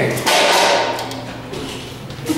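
Glass entrance door of a building being pulled open: a sudden rush of noise with a thump, fading away over about a second.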